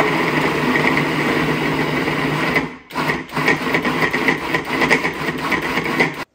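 Countertop food processor motor running, its blade chopping vegetables in the bowl. It runs steadily, stops briefly about halfway through, then runs again with an uneven, choppier sound.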